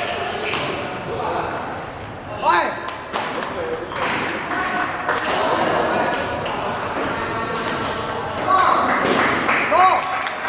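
Table tennis balls clicking off paddles and the table in quick rallies, from several tables in a large hall, over background voices. There is a short squeal about two and a half seconds in.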